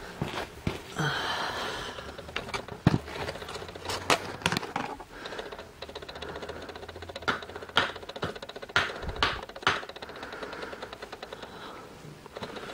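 A string of irregular clicks and light knocks, the handling noise of things and the camera being moved about, with a brief rustle about a second in.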